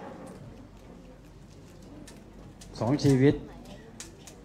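Quiet background chatter and room noise, then a man's voice speaking loudly near the end.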